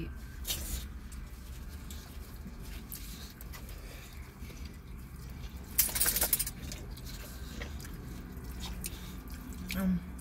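An English bulldog gives a short, loud, fluttering snort about six seconds in, over a steady low hum in a car cabin.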